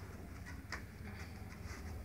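Soft sounds of people moving barefoot on a foam mat, with one light tap about three-quarters of a second in, over a low room hum.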